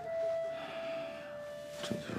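Soft background music of a few sustained held notes, the main note stepping slightly lower about a second in. A short, sharp noise sounds just before the end.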